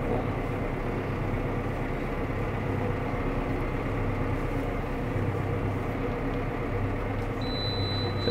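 Valtra tractor engine running steadily at working revs, heard from inside the cab, with the PTO driving the fertiliser spreader. Near the end, a short high beep sounds.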